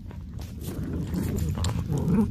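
Small dog scuffling and humping against a plush toy on carpet: quick irregular ticks and scuffs over a low rumble of movement.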